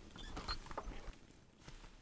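Quick, light skittering taps and clicks, a scurrying sound effect, busiest in the first second and thinning out after.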